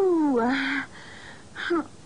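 A woman moaning in pain: one long moan falling in pitch, then a shorter one about a second and a half in.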